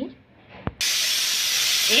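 Stovetop pressure cooker letting off its first whistle: steam suddenly blasts out from under the vent weight about a second in, a loud, steady hiss. It is the sign that the cooker has come up to full pressure.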